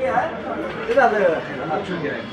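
Indistinct speech: people's voices talking, with no other distinct sound.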